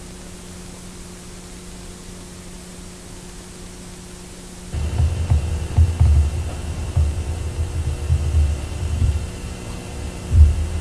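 Steady tape hiss with a low mains hum. About halfway through this gives way to a louder, uneven low rumble over the same steady hum.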